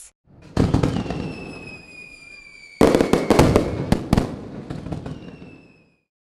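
Fireworks: a burst about half a second in, with a long whistle that falls slowly in pitch, then a second, louder burst of crackling pops near the middle that dies away.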